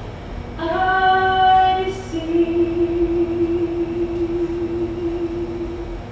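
A woman singing slow, long-held notes: one note, then a slightly higher one held for about four seconds.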